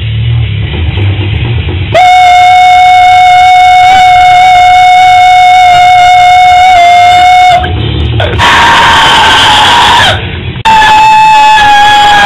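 Pig squeal metal scream from a young man's voice into a handheld microphone, very loud. One long, high, steady squeal held for about five seconds, then two shorter ones, the last sliding down in pitch as it breaks off.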